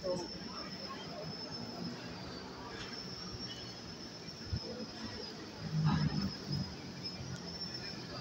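City street ambience: a low traffic rumble with fragments of passers-by talking, and a thin steady high tone throughout. There is a brief louder swell about six seconds in.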